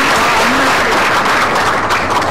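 Audience applauding, dense and steady clapping that begins to thin into separate claps near the end.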